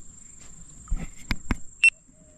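A steady high drone of crickets, with a few sharp clicks and knocks about a second in from a spinning rod and reel as a spoon lure is brought up out of the water. A short high-pitched chirp near the end is the loudest sound.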